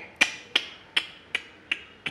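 A run of five sharp clicks, evenly spaced at nearly three a second.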